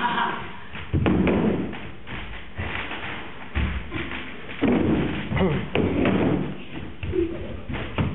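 Several thuds and sharp knocks, the clearest just after a second in and again a little past the middle, amid wordless voice sounds.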